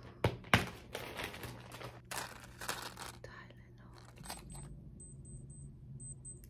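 Two sharp clicks near the start, then handling rustle. From about four seconds in comes a quick run of short, high-pitched beeps from a digital thermometer, signalling that the reading is finished.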